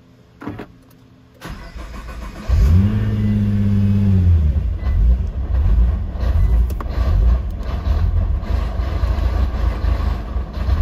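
2015 Nissan GT-R's twin-turbo V6 being started on a Cobb Stage 1+ Big SF intake tune: a click, a second of cranking, then the engine catches with a rise-and-fall flare in revs and settles into an idle whose level keeps wavering. The owner is having running trouble with this intake and tune.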